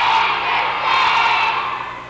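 An audience clapping and cheering as the music ends, the noise fading near the end.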